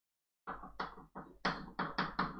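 Chalk writing on a blackboard: a quick run of about seven short strokes and taps, starting about half a second in, as a short line of symbols is chalked.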